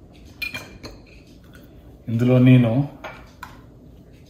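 Metal wire whisk clicking and clinking against a small ceramic bowl of milk in a few sharp taps as it is put down to rest in the bowl. About two seconds in there is a short, held vocal sound, louder than the taps.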